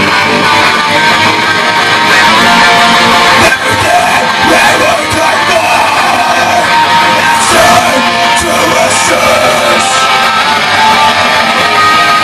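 A small rock band playing live: two electric guitars played loud and continuously, with a singer's yelled vocals coming in about four seconds in.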